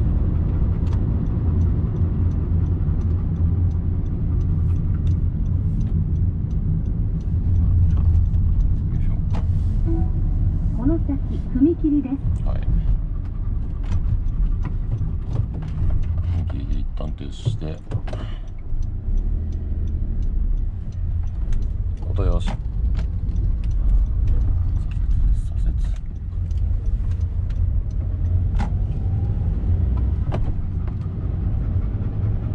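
Inside the cabin of a Honda N-VAN kei van, its 660 cc three-cylinder engine running at low revs under way, with a steady low rumble of engine and road noise. A few short higher-pitched sounds and clicks come through in the middle.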